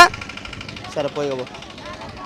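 A vehicle engine idling steadily under the talk of a roadside crowd, with a short spoken word about a second in.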